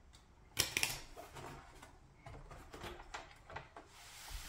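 Plastic retaining clips of an HP Pavilion 27 all-in-one's display panel popping loose as the panel is pried up from the back housing. There is one sharp click about half a second in, then several fainter clicks.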